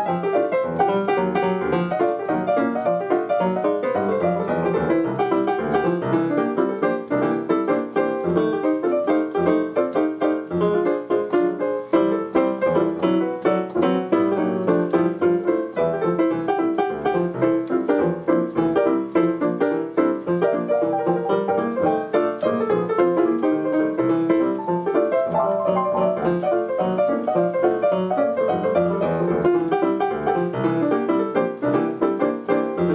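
Technics digital piano played with both hands, a continuous piece of many quick notes without a break.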